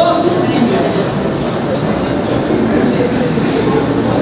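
Indistinct voices of people talking in a large hall, over a steady background noise, with no clear words.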